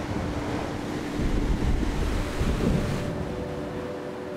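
Ocean surf breaking on a beach, a steady wash of noise that grows louder about a second in, with wind buffeting the microphone.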